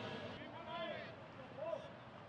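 Faint, distant voices calling and chatting over the low background noise of a sparsely filled ballpark.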